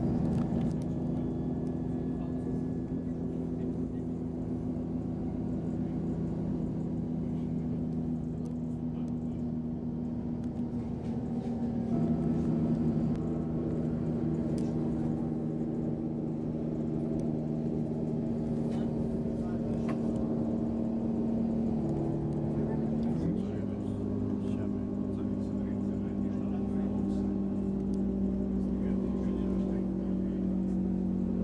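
Passenger train running, heard from inside the carriage: a steady drive hum of several tones over a low rumble, stepping to a new pitch a few times with a brief upward glide about three-quarters of the way through.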